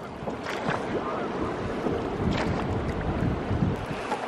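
Wind rumbling on the microphone over the rush of moving river water.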